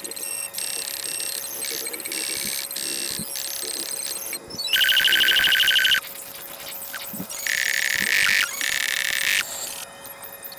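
High-pitched electronic ringing tones in short blocks, like a bell or alarm, with a loud rapid trill about five seconds in and another loud ringing passage from about seven and a half to nine seconds.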